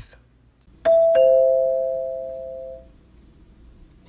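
Two-note ding-dong doorbell chime: a higher note, then a lower one a fraction of a second later, both ringing out and fading over about two seconds.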